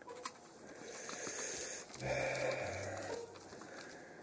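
A man humming softly through closed lips: a breathy lead-in, then two low notes about two seconds in, the second lower than the first.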